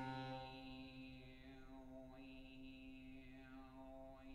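Grand piano prepared with glass tumblers: a low chord struck suddenly and left ringing, while a glass tumbler pressed on the strings makes gliding pitches that sweep down and snap back up, about two seconds in and again near the end.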